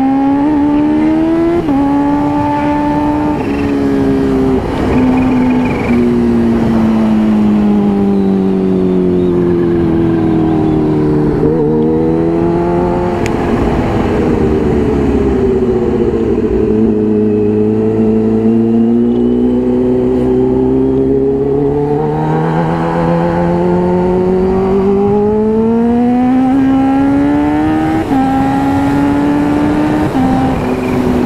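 Kawasaki Ninja H2's supercharged inline-four engine running under way, heard from the saddle. Its pitch sinks steadily over about ten seconds as the bike slows and stays low for a while. It then climbs again as the bike accelerates, with a step up near the end.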